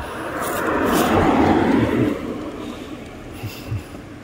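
A car driving past on the street, its noise swelling to a peak about a second in and fading away over the next second or so.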